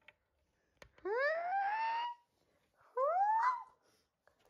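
A child's voice making two rising wails: a long one sliding upward about a second in, and a shorter one near the three-second mark.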